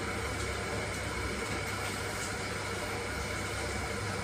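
Electric kettle heating water: a steady rumbling hiss with a low hum underneath.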